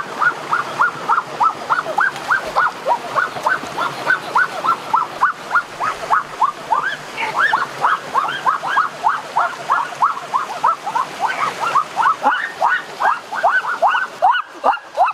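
An animal's rapid run of short rising chirps, about five a second, going on without a break over the even rush of flowing water.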